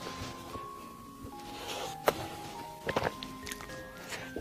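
Soft background music with short held notes, over which a few sharp mouth clicks from eating and chewing a chocolate-coated dessert are heard, one about two seconds in and a little cluster about a second later.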